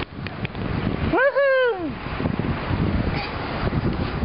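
A toddler's short, high-pitched vocal sound about a second in, rising and then falling in pitch, heard over low wind rumble on the microphone.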